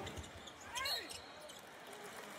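Faint basketball game audio from the arena feed: crowd noise in a large hall, with a short sound falling in pitch just under a second in.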